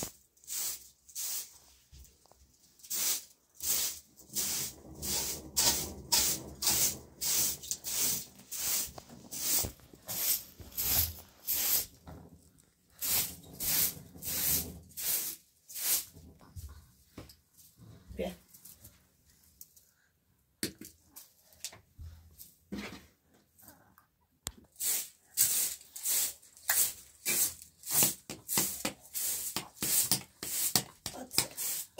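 Short straw hand broom sweeping a tiled floor: quick, rhythmic swishes of the bristles, about two or three a second, with a pause of a few seconds past the middle.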